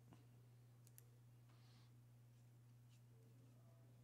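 Near silence: a steady low electrical hum with two faint clicks, about a tenth of a second and a second in.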